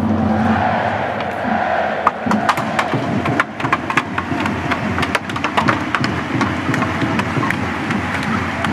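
Ice hockey arena crowd cheering, with a run of sharp, irregular knocks from about two seconds in.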